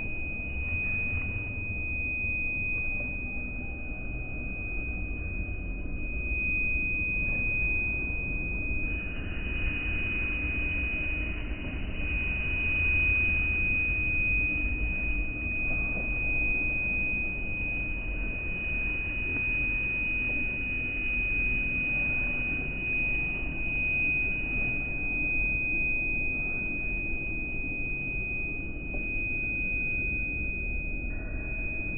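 A steady high-pitched tone over a low background rumble, with a little more hiss around the tone in the middle stretch.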